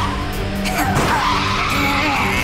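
Tire-skid and racing-car sound effects for two animated mini race cars sliding through a turn side by side, with curving squeals, over background music.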